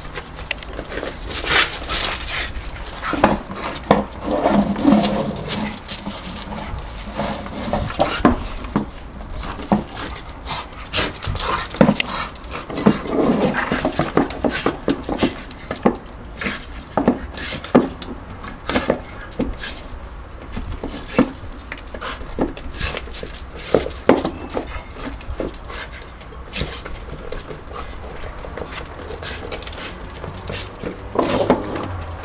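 Staffordshire bull terrier panting as it chews and tears at a plastic traffic cone, with many irregular sharp cracks and crunches from the plastic.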